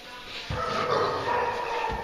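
Several dogs barking and whining faintly, with a low rumble coming in about half a second in.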